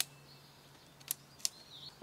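Shock-corded T6 aluminium tent pole sections clicking into each other as they are unfolded and snapped together. There are three sharp clicks, one at the start and two more about a second in.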